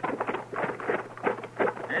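Horses' hoofbeats from a radio-drama sound effect as riders come in: a quick, uneven run of strikes, several a second.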